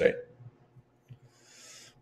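A man's voice trailing off at the end of a word, a second of near silence, then a short, faint breath in just before he speaks again.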